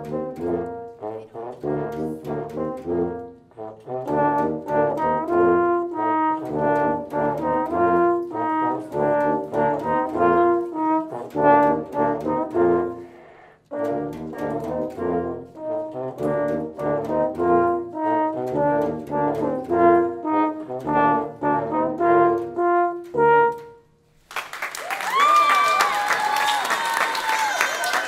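Brass quartet of euphonium, tuba, trombone and French horn playing a rhythmic passage of short repeated notes over a low bass line, with a brief break about halfway and the playing ending a few seconds before the close. Applause and cheering voices follow.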